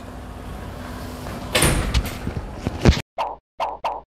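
A metal-framed glass door being pushed open and swung, rattling and knocking, with a sharp knock about three seconds in. After that come a few short separate bursts, each cut off cleanly.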